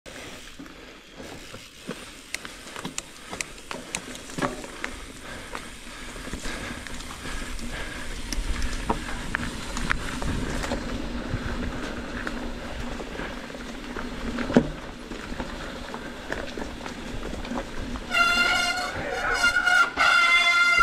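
Mountain bike going downhill on a dirt trail: tyre noise with rattles and knocks over the bumps, one sharp knock a little past the middle. About two seconds before the end, disc brakes start a loud multi-tone squeal, the brake howl the riders call the "whale song".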